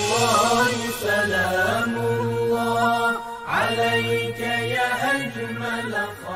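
Closing ident music: a voice chanting a slow melody in long, wavering held notes, with a short break about three and a half seconds in.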